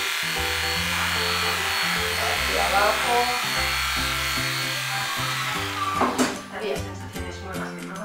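Aesculap Favorita II electric animal clipper running steadily as it shears a fox terrier's belly and inner hind leg, under background music. The clipper stops about five seconds in, followed by a few light knocks.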